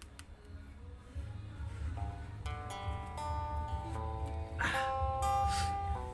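A ballad's guitar intro begins about two seconds in: single plucked notes that ring on and overlap, building toward the song.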